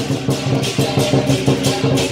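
Lion-dance percussion: a large drum beating with cymbals crashing in a steady rhythm.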